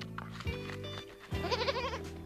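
A goat bleating once, a short quavering call near the end, over light background music with plucked notes.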